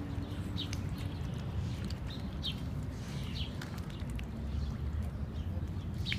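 Birds chirping, short high chirps every second or so, over a steady low rumble.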